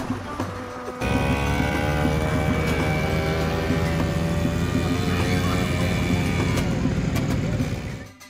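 Quad bike (ATV) engine running steadily, cutting in suddenly about a second in, its pitch creeping slightly upward, then fading out near the end.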